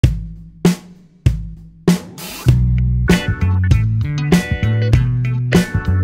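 Background music: four separate drum hits, each dying away, then a full band with a steady drum beat and sustained chords comes in about two and a half seconds in.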